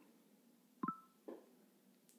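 HoloLens 2 interface chime confirming a "next step" voice command: a short electronic beep of two tones together about a second in, followed by a softer, lower blip.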